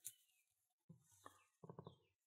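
Near silence, with a few faint metallic clicks and a quick run of ticks near the end as the key slides out of the old brass wafer lock cylinder.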